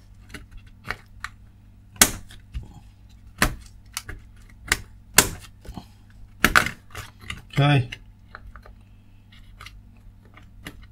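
DDR memory modules and the plastic latches of the motherboard's DIMM slots clicking as the sticks are pushed in and pulled out repeatedly to reseat them: a series of irregular sharp clicks. A short low hum, likely a voice, comes about three-quarters of the way through.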